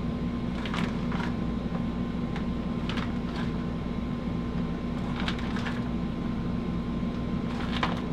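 Raw bratwursts being set by hand into a ceramic slow cooker crock: a few soft, scattered taps and knocks over a steady low hum.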